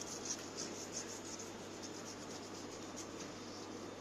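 Wax crayon scribbling on a paper plate: quick, even back-and-forth scratching strokes of the crayon over the paper.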